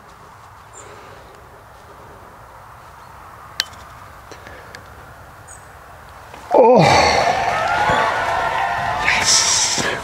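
A putter strikes a golf ball with a single sharp click a few seconds in. A few seconds later a man lets out a long, loud, wavering shout of celebration as the birdie putt drops.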